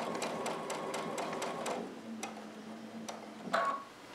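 Domestic sewing machine stitching slowly along a napkin hem, its needle strokes ticking about five times a second. The machine slows to a few separate stitches in the second half as the needle nears the miter fold where it is to stop before the fabric is pivoted.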